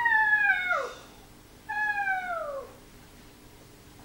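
Two long, high-pitched cries, each falling steadily in pitch over about a second: the first trails off about a second in, and the second comes shortly after.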